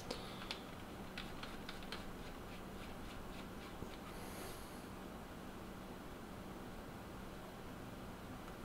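Faint small clicks and ticks of fingers handling and screwing down the metal top cap of a rebuildable tank atomizer, thinning out after about three seconds, over a low steady hum.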